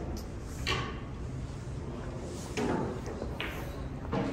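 Snooker balls rolling and knocking on the table after a shot, with a few short sharp clicks over the hall's steady room noise.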